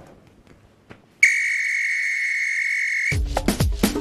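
A single long, steady whistle blast lasting about two seconds. It cuts off as theme music with a strong drum beat comes in.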